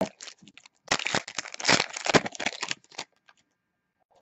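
A foil pack of baseball cards being torn open and its wrapper crinkled: a dense crackling rustle lasting about two seconds, with a few small rustles before and after it.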